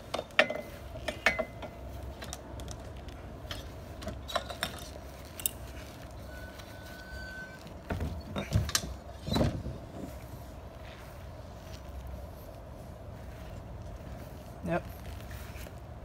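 Clicks and clunks of a Minn Kota trolling motor's bow mount as the motor is swung down and locked into its stowed position. The knocks are scattered, with a louder cluster about eight to nine and a half seconds in, over a faint steady hum.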